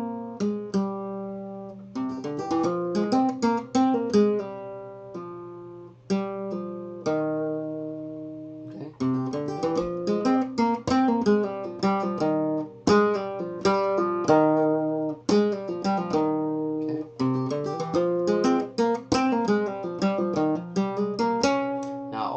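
Flamenco guitar playing a bulería falseta: quick single-note lines with pull-offs and thumb-plucked (pulgar) notes, with syncopated accents. One pull-off is accented with a golpe tap on the top. It comes in several short phrases with brief pauses between them.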